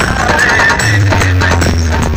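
Loud DJ competition remix music played through a big outdoor speaker stack, with a heavy, booming bass line.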